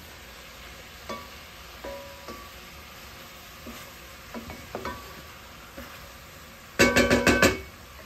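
Chicken and vegetables sizzling in an aluminum pot while a wooden spoon stirs them, with soft scrapes and taps. About seven seconds in comes a loud, quick run of about six ringing knocks.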